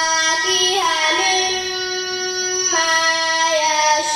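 A young girl's voice chanting Quranic recitation (tajweed) in long, drawn-out melodic notes. A long held note in the middle steps down in pitch twice near the end.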